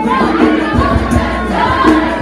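Youth choir singing in harmony, many voices together, with a steady low beat underneath.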